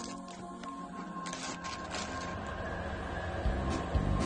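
Background music, with crinkling and rustling of cardboard flaps and a plastic bag as a box of OxiClean powder is opened by hand; a low, beat-like pulse comes into the music near the end.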